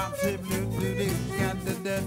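Acoustic swing band playing live: violin over strummed acoustic guitar and upright bass, with a steady beat.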